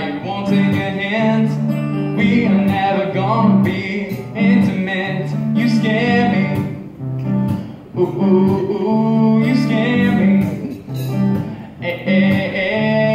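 A live acoustic guitar song: an acoustic guitar strummed in a steady rhythm, with a man singing over parts of it.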